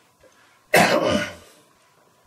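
A man coughs once, starting suddenly a little under a second in and dying away within about half a second.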